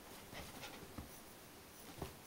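Faint scratching and rustling on a fabric bedspread as a small dog shifts about on it, with a few soft scratches about half a second and a second in.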